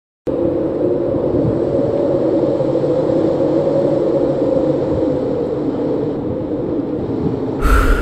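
Steady low rumbling drone of a dark ambient soundtrack, with a sudden loud hit near the end.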